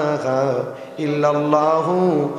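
A man's voice chanting a munajat (Islamic supplication) in a drawn-out melodic style through a public-address system. The long held notes bend in pitch, with a short break about a second in.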